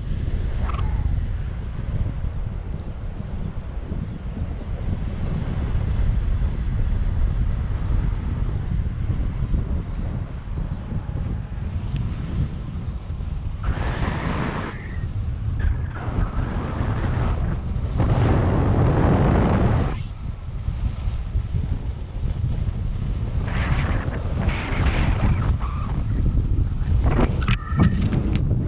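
Wind buffeting the camera's microphone in flight on a tandem paraglider: a steady low rumble that surges louder several times, with a few sharp knocks near the end.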